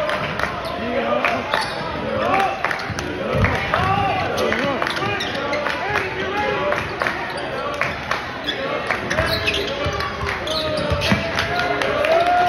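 Basketball being dribbled on a hardwood gym floor, a string of sharp bounces, over the voices of players and spectators calling out in a large gymnasium.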